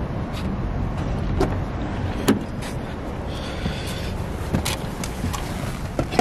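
A car door being unlatched and opened as someone gets in, with a few sharp clicks and knocks, the loudest about two seconds in, over a steady low rumble.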